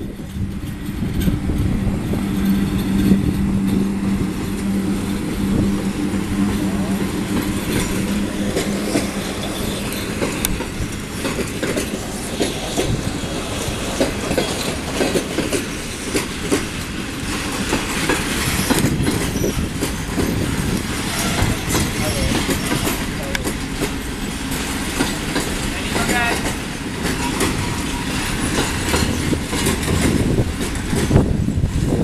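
ET22 electric freight locomotive passing with a steady low hum for the first several seconds. Its loaded container wagons follow, rolling past with a continuous rumble and wheels clattering over the rail joints, and a brief wheel squeal near the end.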